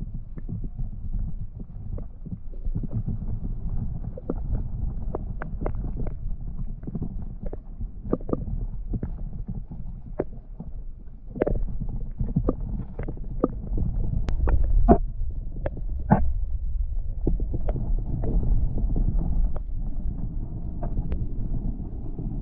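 Underwater sound from a submerged camera: a steady, muffled low rumble of water with many scattered sharp clicks and ticks, somewhat louder from about halfway through.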